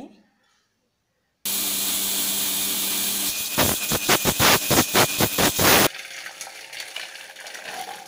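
Electric kitchen mixer grinder grinding grated coconut and green chillies with water into a paste. It starts suddenly about a second and a half in with a loud steady whirr and hum, turns to a fast pulsing churn of about four beats a second, and cuts off abruptly near six seconds.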